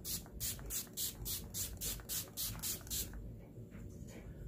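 Gerard Cosmetics Slay All Day setting spray, a pump-action fine-mist bottle, sprayed onto the face in a quick run of about a dozen short hissing pumps, roughly four a second, stopping about three seconds in.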